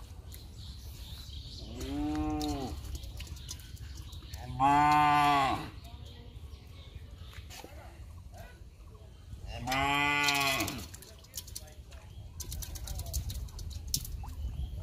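Three long drawn-out animal calls, each about a second long and rising then falling in pitch, the middle one the loudest, over a low steady rumble.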